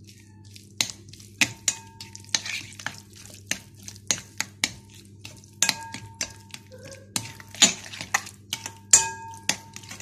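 A spoon stirring a thick yogurt mixture in a glass bowl, knocking against the glass with irregular sharp clinks, some of them ringing briefly.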